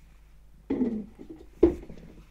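A man's brief low vocal noise, not words, followed by a short sharp sound about one and a half seconds in.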